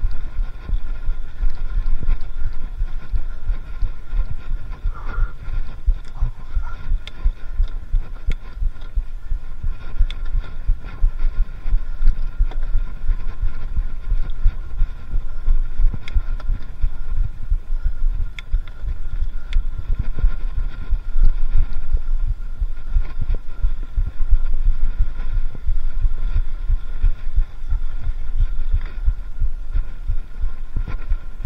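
Mountain bike ridden over rough forest trail, heard through a handlebar-mounted camera: a constant low rumble from vibration and wind on the microphone, with irregular rattles and knocks from the bike over bumps and roots.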